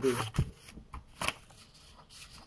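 A stack of paper sheets handled and riffled by hand: a few short, crisp rustles and flicks of paper, the loudest under half a second in.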